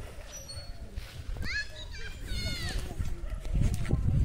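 Children's high-pitched calls and squeals from a playground, two short bursts in the middle, over a low rumble that grows louder near the end.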